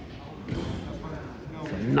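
Room tone of a large, echoing gym, with faint voices in the background and a soft thump from the wrestling mat about half a second in. The commentator's voice comes in near the end.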